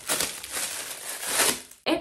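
Thin plastic packaging bag crinkling as a silicone scalp massager brush is pulled out of it, the rustling growing louder for about a second and a half and stopping just before the end.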